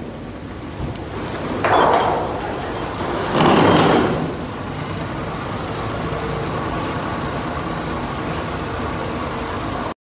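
A forklift running as it lifts the front of a car, with a steady mechanical hum under it. Two loud rushing bursts come about two and about three and a half seconds in.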